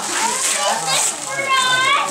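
Children's voices in a room, ending in a child's high-pitched voice held for about half a second near the end, with wrapping paper tearing off a gift box in the first second.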